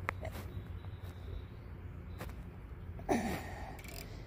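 A few sparse, irregular clicks from a socket ratchet with a 15 mm socket tightening a license plate bracket bolt, over a steady low hum. A short spoken 'yeah' comes near the end.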